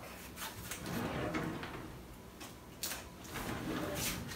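A kitchen drawer is opened and plastic measuring spoons are taken out, giving a few scattered light clicks and knocks.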